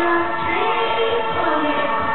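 Loud club dance music from a DJ set: sustained synth chords and a sung vocal line that glides up and down over a low thudding beat.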